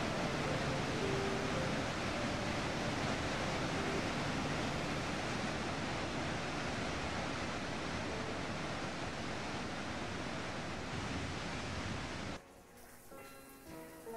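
Water rushing over a dam's spillway gates in a steady, even rush of whitewater, with soft music underneath. The water sound cuts off suddenly about twelve seconds in, leaving only quiet music.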